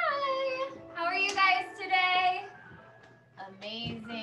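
A woman's high-pitched, sing-song voice calling out a greeting in about three drawn-out phrases, the first sliding up in pitch, with faint music underneath.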